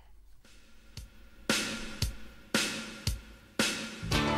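Intro of a recorded song played on air: after a brief quiet start, heavy drum beats strike evenly, about two a second, and the full band comes in at the very end.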